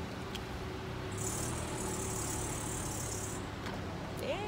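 Car engine running, heard from inside the cabin: a steady low hum that the driver calls loud, with a high hiss for about two seconds in the middle.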